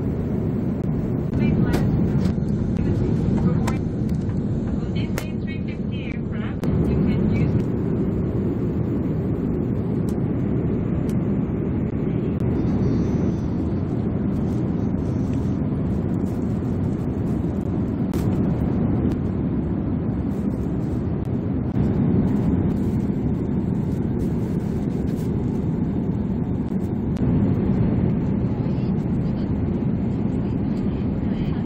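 Airbus A350-900 cabin noise in cruise: a steady, deep, even rush of engine and airflow noise, with a few light clicks.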